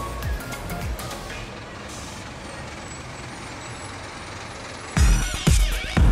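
Music with a bass beat fades out in the first second and a half, leaving steady city street traffic noise of buses and other vehicles. About five seconds in, a loud whoosh with sweeping tones cuts in.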